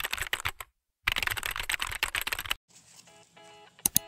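Rapid keyboard-typing clicks in two runs, a short break between them. Soft music then begins, with two sharp clicks just before the end.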